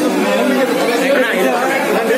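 Several people talking at once, overlapping voices in a steady, loud chatter.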